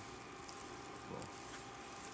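Butter and brown sugar sizzling faintly in a stainless steel skillet as a spatula stirs and presses the sugar lumps, with a few light taps of the spatula on the pan.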